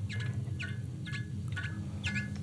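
Electroacoustic improvisation: short high falling chirps repeating about twice a second over a steady low drone.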